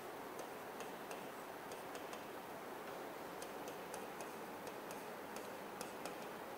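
Chalk tapping on a greenboard as numbers and percent signs are written: faint, irregular clicks over a low hiss.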